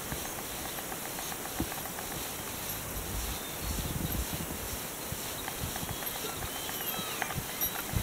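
Faint songbird calls over a steady outdoor background hiss, with a few short curving chirps near the end and some soft low bumps around the middle.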